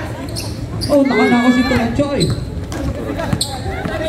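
Basketball bouncing on a court during a game. A man's voice calls out about a second in and holds for nearly a second.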